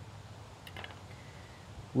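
Quiet background with a low steady hum and a few faint ticks a little under a second in, from handling a small knife and a fig at the table.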